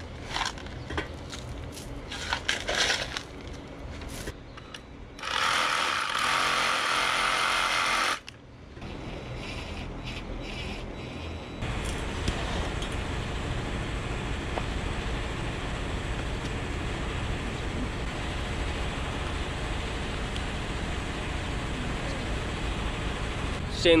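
Knocks and handling sounds of work on a buried water pipe, then about three seconds of steady hiss that cuts off suddenly. From about halfway in, an engine runs steadily with a low rumble.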